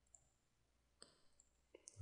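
Near silence with a few faint computer mouse clicks, one about a second in and a couple near the end.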